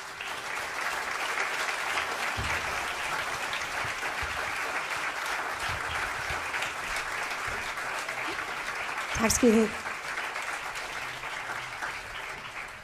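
Concert audience applauding at the end of a song, a steady spell of clapping that eases off slightly toward the end. A brief voice is heard above the clapping about nine seconds in.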